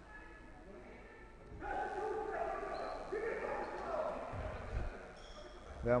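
A basketball coach's raised voice shouting at her players across the court, angry with them, for a few seconds starting about a second and a half in.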